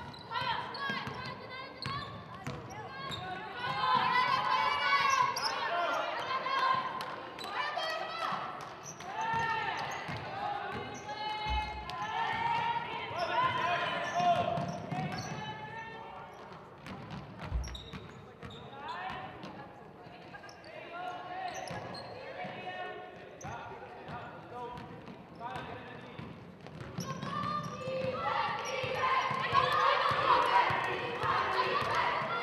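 A basketball being dribbled on a hardwood gym floor, short repeated bounces, under players' and spectators' shouts and calls that echo in the gymnasium.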